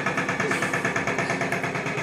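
A small engine or motor running steadily with a rapid, even pulse.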